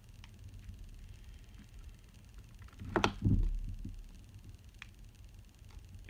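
Quiet handling of a bar of handmade soap in the hands, over a low steady room hum, with a few faint ticks. About three seconds in there is a short "ah" with a sharp tick and a low bump.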